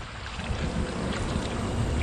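Water running from a garden hose and splashing onto a stainless steel cleaning table and cutting board, a steady hiss, as the fish-cleaning surface is rinsed off.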